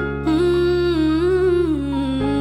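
A sped-up song: one voice sings long, sliding notes over sustained low bass chords.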